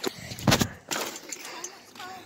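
A loud clattering knock about half a second in, then a smaller knock just under a second in, from the handheld phone being jolted as it tumbles.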